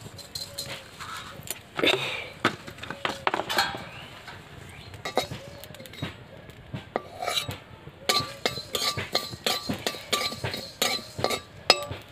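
Metal spatula scraping and clinking against an iron kadai as coriander seeds are dry-roasted and stirred, in many irregular strokes.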